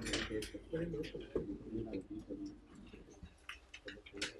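Low murmur of voices in a classroom, with scattered light clicks from a laptop's keys or trackpad.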